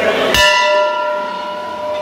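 Large hanging metal temple bell rung once by hand, struck about a third of a second in, then ringing on with several steady tones that fade slowly.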